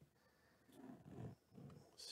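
Mostly near silence, with a faint, low, wordless man's murmur about a second in and again just before the end.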